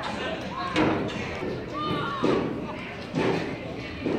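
Distant shouts of players and coaches across an outdoor football field as a play starts, with three sharp knocks close by, about three-quarters of a second, two and a quarter and three seconds in.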